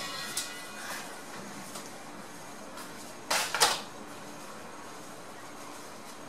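Handling noise of fingers pressing and rubbing a strip of interlón studded with half-pearls and rhinestones: a short scraping rustle in two quick strokes a little past the middle, over a faint steady background.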